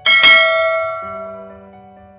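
A bell-ding sound effect struck once for a notification-bell click, ringing with many overtones and fading away over about a second and a half, with soft background music underneath.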